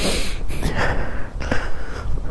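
A person breathing hard while walking up a steep dirt trail, the breaths rushing in and out over a steady low rumble.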